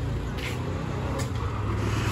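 A vehicle engine running steadily at idle, a low even hum, with a couple of faint clicks.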